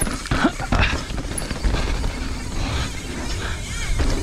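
Mountain bike riding fast down a dirt and rock trail: a steady rush of wind on the microphone with tyre noise from the ground, and several sharp knocks and rattles from the bike over bumps in the first second.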